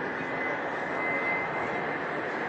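Airbus Beluga's twin turbofan engines heard in flight: a steady rush of jet noise with a faint high whine that rises slightly.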